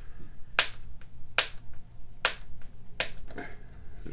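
Four sharp snaps, a little under a second apart, as stiff plastic packaging wrap is bent and worked at by hand with a plastic card to get it open.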